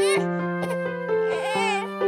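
Soft children's-song backing music with held notes, over which a cartoon toddler gives short wavering whimpers, briefly at the start and again in a longer, falling cry a little past halfway, crying over a scraped knee.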